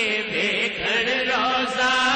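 Male voice singing a naat, drawing out long, wavering notes without clear words.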